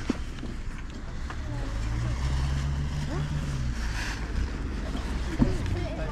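Open-air background of a busy field: a low rumble with faint voices, and a steady low engine hum from a vehicle for a couple of seconds in the middle.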